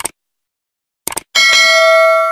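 A short click, a quick double click about a second later, then a single bell ding that rings on with several clear tones and slowly fades: a notification-bell sound effect.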